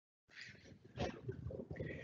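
Dead silence on a muted call line, then about a third of a second in a microphone opens on faint room noise, with a soft knock about a second in and small rustles.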